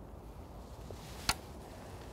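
A single sharp click about a second in, over a quiet open-air background: a fixed-spool reel's bail arm snapping shut as the float rod is lowered after a cast.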